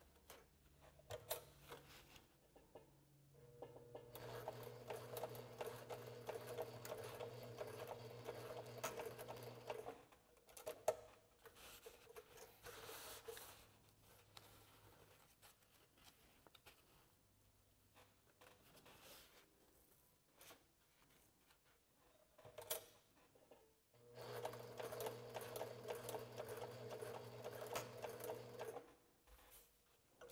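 Sewing machine driven by a Workerbee servo motor at about half speed, stitching short tacking seams through pleated fabric: a steady hum with rapid needle strokes for about six seconds from about four seconds in, and again for about five seconds near the end. In between, soft rustles and clicks of the fabric being handled and repositioned.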